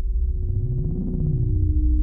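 Electronic music: a deep synthesizer bass drone under clean, steady synth tones that step down in pitch, one held note giving way to a lower one about a second in.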